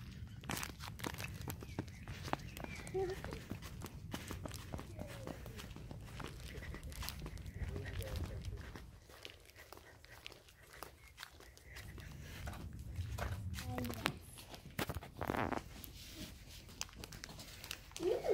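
Footsteps and scattered clicks of a handheld phone camera being carried while walking, over a low rumble that eases off for a few seconds in the middle. A few faint, indistinct voices come through now and then.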